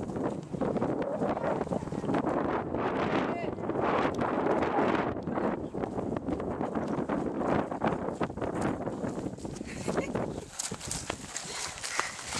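Indistinct voices with footsteps on dirt and grass, the steps coming as a run of knocks.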